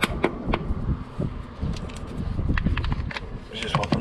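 Scattered light clicks and knocks of a socket and cordless impact wrench being handled and fitted onto a car's wheel bolt, before the wrench is run.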